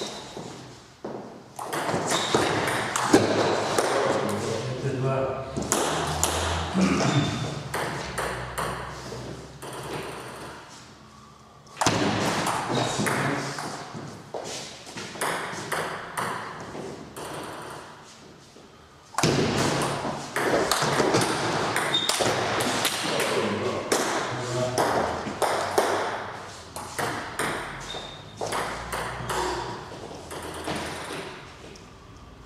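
Table tennis rallies: the ball clicking back and forth off the bats and the table in quick succession, in two or three runs separated by short lulls.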